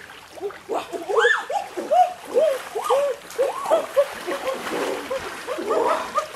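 Water splashing and gurgling in a shallow muddy river, a quick irregular run of bubbly plops, loudest in the first half.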